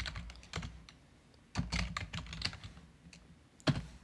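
Typing on a computer keyboard: a run of irregular key clicks, then one louder keystroke near the end, the Enter key submitting the search.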